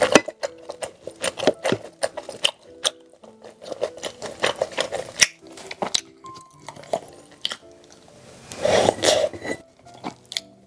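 Close-miked eating sounds: wet chewing and many small mouth clicks on very tender soy-sauce braised pork belly, with chopsticks working rice in a ceramic bowl, over soft background music. A louder, noisy swell comes near the end.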